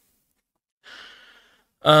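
Dead silence for almost a second, then a person's short, soft breath in lasting about half a second, taken just before speech resumes at the very end.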